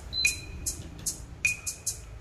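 Sony CFD-700 boombox playing the sparse intro of a song: a run of short, high hi-hat-like ticks about two or three a second, with two brief high pings.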